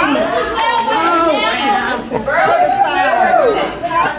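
Several people talking over one another: loud, indistinct chatter in a room.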